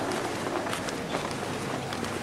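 Footsteps on a carpeted floor, a few faint irregular steps over steady background noise.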